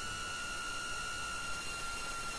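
FPV quadcopter's iFlight XING Cyber 2207 1777KV brushless motors and propellers at high throttle on a 6S battery: a steady high-pitched whine held at one pitch, over a hiss.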